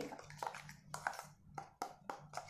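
Metal spoon stirring a serum in a small ceramic bowl, giving several light clinks against the bowl.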